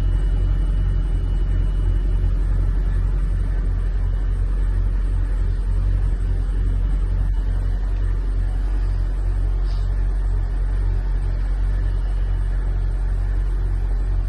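Mercedes-Benz W124 E500's V8 engine idling steadily: a low, even rumble with a regular pulse.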